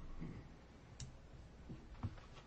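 Quiet small-room tone with one sharp click about a second in.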